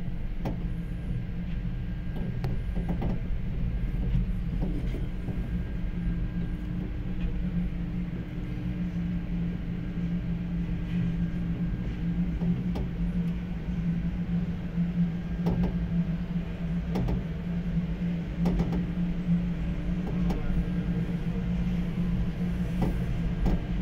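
Gondola lift cabin moving through the lift station, heard from inside the cabin: a steady low mechanical hum with scattered clicks and knocks from the running gear.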